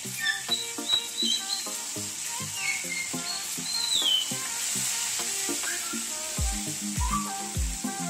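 Whole masala-coated tilapia sizzling as they shallow-fry in hot oil in a pan, with a spatula working the fish. Background music plays over it, with a deep steady beat coming in about six seconds in.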